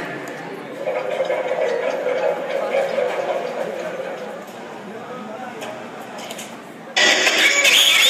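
Voices and chatter echoing in a large arena. About seven seconds in, a much louder sound starts suddenly and keeps going.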